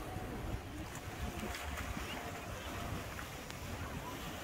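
Wind noise on the microphone over the steady wash of ocean waves and splashing water.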